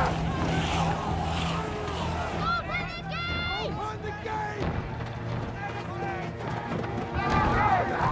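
Battle soundtrack: several voices shouting and yelling in the chaos, loudest about three seconds in and again near the end, over a low, steady music drone.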